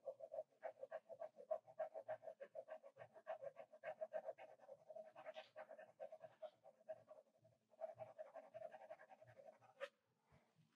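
Pencil shading on drawing paper at an easel: quick back-and-forth hatching strokes, about five or six a second, faint, with a short pause a little after seven seconds in.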